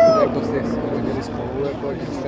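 Twin Pratt & Whitney R-985 Wasp Junior radial engines of a Beech C-45 Expeditor giving a steady drone in flight, with a voice over it near the start.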